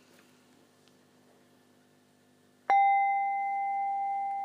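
Near silence, then a metal sound-therapy chime struck once about two-thirds of the way in, ringing on as one clear, steady tone that fades slowly.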